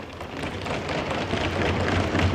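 Assembly members applauding by thumping their desks, a dense patter of many small knocks that builds up over the first second and then holds steady.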